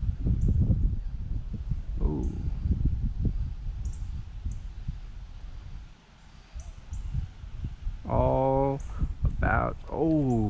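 Wind rumbling and buffeting on the microphone, easing off about six seconds in. A man's voice sounds briefly near the end.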